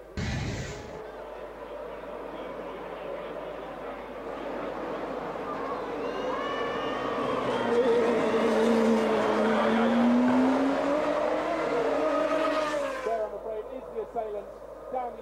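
A sudden crash as two A1GP open-wheel race cars collide, with a thud of impact and flying debris in the first second. Then the cars' V8 racing engines run and rev, rising in pitch and growing louder towards about ten seconds in, before cutting off abruptly near the end.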